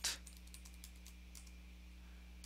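Computer keyboard typing: a few faint, scattered keystrokes as a command is entered, over a steady low electrical hum.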